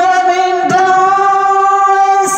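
Sung music: a singer holds a long, steady note, taking a new note or syllable about two-thirds of a second in and holding it to the end.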